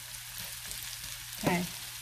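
Sliced onions in olive oil sizzling steadily in a cast-iron skillet over medium heat.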